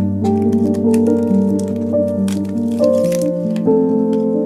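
Background piano music, with plastic packaging crinkling and rustling over it as a plastic-wrapped 3D-printer release-film sheet is handled and lifted out of its box; the crinkling is densest around the middle.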